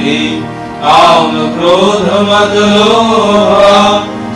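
Devotional prayer song being chanted with musical accompaniment: a slow sung melody over a steady held drone. One phrase dies away about half a second in and the next begins just under a second in.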